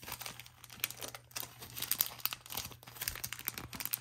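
Clear plastic bag crinkling and rustling as it is handled and crumpled, a dense run of irregular short crackles.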